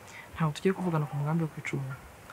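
A woman speaking: a short spoken phrase, with no other sound standing out.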